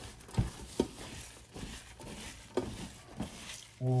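Gloved hand mixing and squeezing chopped onions and fresh coriander with ground spices in a stainless steel tray: soft, irregular wet squelching and rustling, with a few sharper taps.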